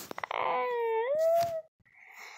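A girl's voice letting out one long groan that dips and then rises in pitch, after a few faint clicks near the start.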